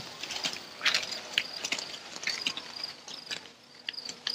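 Insects chirping in a steady high trill, with scattered light clicks and ticks.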